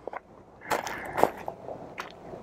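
Footsteps crunching on dry wood-chip mulch: several uneven crunches, the loudest a little under a second in and again just after a second.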